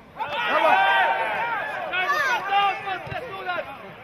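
Several men shouting over one another at an amateur football match while play is on, their voices overlapping in excited calls.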